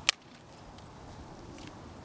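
A single sharp slap about a tenth of a second in, as a hand grabs a color guard rifle in a claw grip; then only quiet outdoor background.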